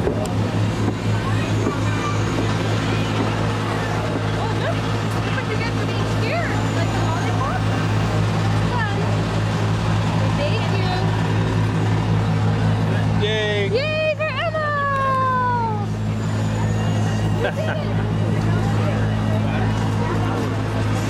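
A steady low engine hum runs throughout under background voices. About thirteen seconds in, a short high-pitched sound slides down in pitch several times.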